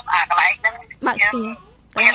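Speech only: a person talking, pausing briefly near the end.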